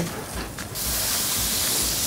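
Vinegar hitting a hot frying pan of lamb sweetbreads while deglazing: a quieter sizzle, then a sudden loud, steady hiss about three-quarters of a second in as the vinegar boils off.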